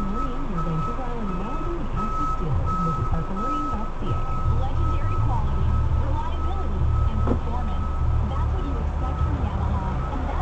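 Car interior sound: a regular high electronic beep repeating about twice a second, which stops shortly before the end, over indistinct voice sounds and a low engine and road rumble that grows louder about four seconds in.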